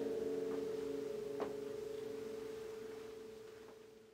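A single guitar note left ringing after the song's final chord, dying away steadily to silence, with a faint click about one and a half seconds in.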